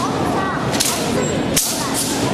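Sharp, hissing swishes, twice about 0.8 seconds apart, over the murmur of a crowd's voices.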